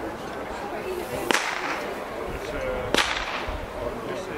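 Two blank-pistol shots about a second and a half apart, sharp cracks with a short echo, of the kind fired to test a dog's gun-sureness during heelwork.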